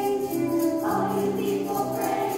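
Children's choir singing a song with accompaniment, over a quick, steady beat in the high range.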